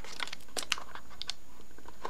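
Irregular light clicks and taps of hard plastic as the small adapter inserts of a universal iPod dock are handled in their plastic tray.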